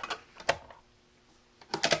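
Sharp plastic clicks from handling a portable CD player: one at the start, another about half a second later, then a quick run of clicks near the end.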